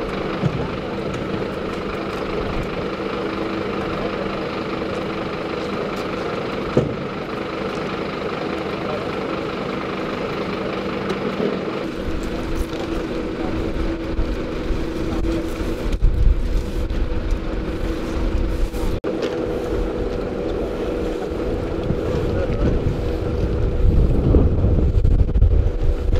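Steady hum of idling emergency-vehicle engines, with indistinct voices; a low rumble grows stronger in the second half.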